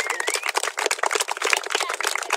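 A small group applauding: many hands clapping in a dense, irregular patter.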